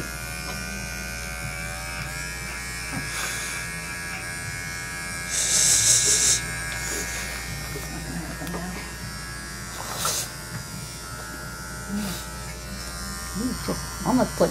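Small cordless dog-grooming clipper running steadily as it trims the face of a Shih Tzu. A short hissing burst comes about five seconds in, and brief sharp sounds near the end.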